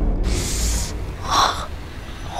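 A woman's short, sharp gasp of pain, about one and a half seconds in, after a brief hiss near the start; she has fallen and hurt her elbow.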